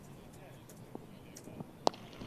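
Quiet cricket-ground background, then a single sharp crack of a cricket bat striking the ball near the end as the batter hits it in the air towards the deep.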